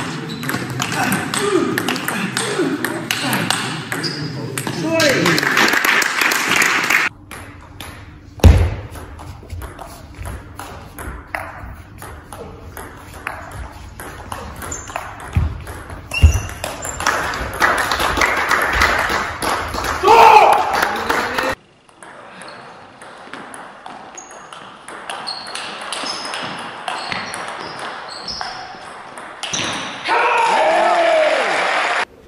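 Table tennis rallies: the ball clicking back and forth off the bats and the table in quick exchanges, with voices in the hall. There is a heavy thud about eight seconds in.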